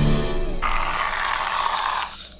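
Aerosol whipped-cream can spraying: one steady hiss, starting about half a second in and lasting about a second and a half, as the cream is squirted out.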